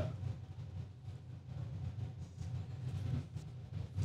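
A low, steady hum or rumble with no distinct events.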